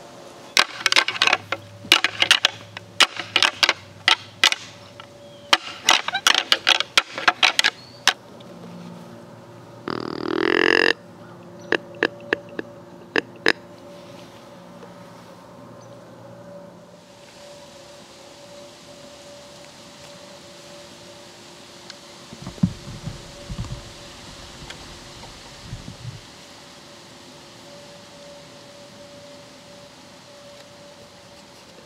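Rattling antlers clacking and grinding together in quick bursts, done to sound like two bucks sparring and draw a buck in. About ten seconds in a single short call with a rising pitch is blown on a deer call, and a few more clacks follow. Near the end come a few low thumps.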